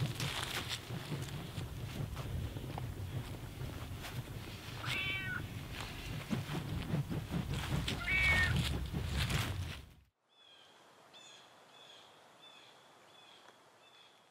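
A cat meowing twice, a few seconds apart, over a gusty low rumble of wind on the microphone. The sound then cuts to near silence, with only faint, evenly repeated high chirps.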